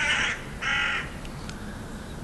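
A crow cawing twice in the first second, with quiet outdoor background after.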